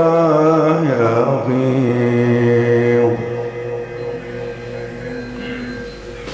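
A male Quran reciter's voice in melodic tajwid recitation, holding a long ornamented vowel with wavering pitch that ends about three seconds in. After it a quieter steady held tone lingers and fades out near the end.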